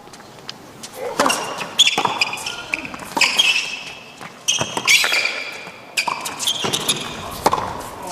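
A professional tennis rally on an indoor hard court: the ball is struck by rackets about every second and a half, with sharp, high squeaks from the players' shoes on the court surface between shots.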